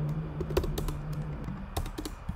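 Typing on a computer keyboard: a quick, uneven run of key clicks as a short word is entered, with a couple of pauses between bursts.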